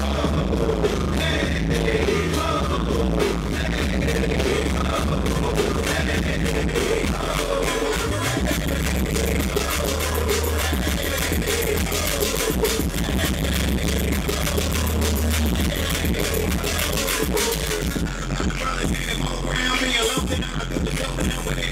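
Live DJ set played loud through a PA: dance music with heavy bass and a steady beat. The bass drops out briefly about eight seconds in.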